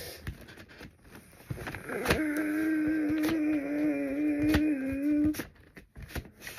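Paper rustling and crinkling with small clicks as a large printed album insert is handled. From about two seconds in, a girl hums one steady held note for about three seconds, then stops.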